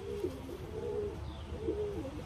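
Racing pigeons cooing softly in a loft, over a steady low hum.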